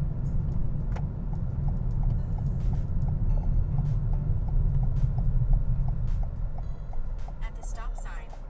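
Car cabin road and engine rumble while driving, with a turn signal ticking steadily, about two and a half ticks a second, ahead of a right turn.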